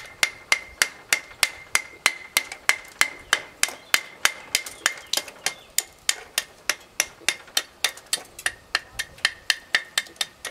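Small nail hammer chipping the edge of a cut stone block: rapid, even taps about four a second, each with a short high ring. The sawn edges are being knocked back so the stone loses its hard cut line and looks aged.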